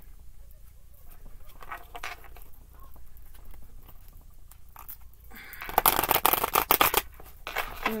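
A deck of tarot cards being handled and then shuffled: quiet handling at first, then a dense, rapid flutter of card edges for about a second, starting a little under six seconds in.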